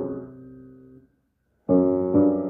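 Grand piano: a held chord fades away over the first second, there is a short silence, then a loud new chord is struck near the end.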